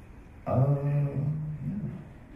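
A man's voice holding a long, level 'ummm' hesitation for about a second and a half, ending in a short 'yeah'.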